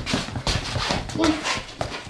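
A woman's distressed crying and heavy, ragged breathing during a physical struggle, with a few short whimpering cries about a second in.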